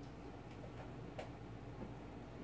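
A few faint, light clicks, the sharpest about a second in, over a low steady room hum.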